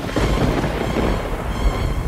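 A sudden rumbling crash, with a hiss that fades over about a second and a half and a deep rumble that carries on, laid over music.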